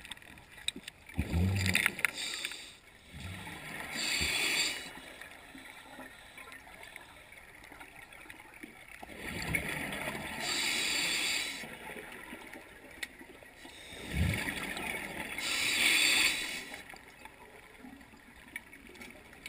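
A scuba diver breathing through a regulator underwater: three breaths, each a low burble of exhaled bubbles and a hissing inhale, repeating about every five to six seconds.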